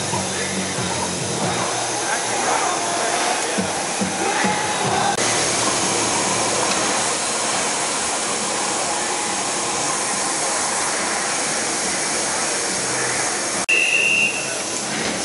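Steady din of a busy exhibition hall, a dense noise of crowd and machinery with faint voices, changing abruptly about five seconds in. A short high tone sounds right at the end.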